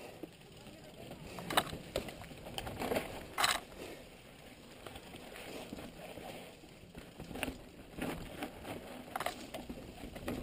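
Mountain bike rolling down a rocky dirt trail, the tyres crunching over dirt and stones with irregular clattering knocks as the bike hits rocks and roots, and a short, louder burst of noise about three and a half seconds in.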